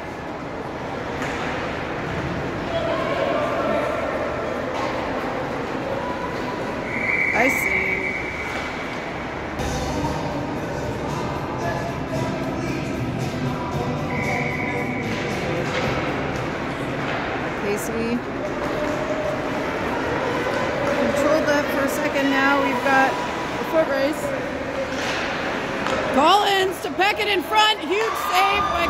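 Indoor ice rink during a hockey game: spectators talking in the stands over the hall's echo, with occasional knocks of sticks and puck. A referee's whistle blows a held blast about seven seconds in and again about fourteen seconds in.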